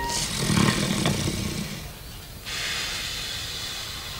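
A man snoring in his sleep: a rough snore lasting about two seconds, then a long hissing breath out beginning about halfway through.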